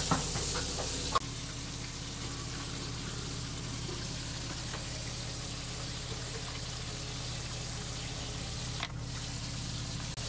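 A steady low hum with a faint even hiss, as from a kitchen appliance or fan. A few light knocks come in the first second, and a single click near the end.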